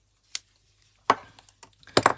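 Hard knocks and a light clatter from handling a die-cutting machine's plate-and-die sandwich on a tabletop: a small click, then two loud knocks about a second apart.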